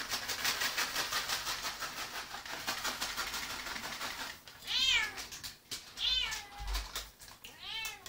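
A domestic cat meowing three times in the second half, each a short call that rises and falls in pitch. Before the meows, a rapid crinkling rustle full of small clicks.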